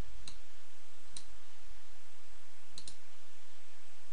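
Computer mouse clicks over a steady background hiss: one click about a third of a second in, another just after a second, and a quick double click near three seconds.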